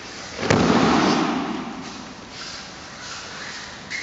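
A thrown aikido partner's breakfall onto foam puzzle mats. One sharp slap about half a second in, then about a second of body and uniform noise against the mat as he lands and rolls, fading away.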